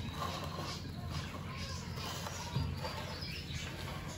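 Soft wet squishing and rustling of hands mixing raw shrimp through an oily garlic-and-onion marinade in a ceramic bowl.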